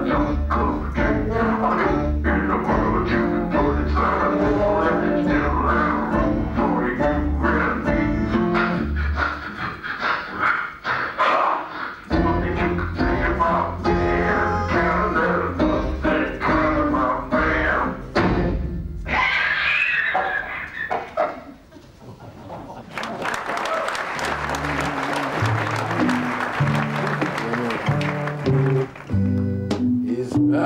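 Live theatre band music built on a low bass figure repeating in a steady pulse, with other instruments over it and a short break partway through. The music stops about two-thirds of the way in and is followed by about six seconds of applause. Plucked bass notes start up again at the end.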